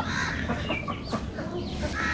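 A flock of chickens clucking, with short, scattered calls at a moderate level.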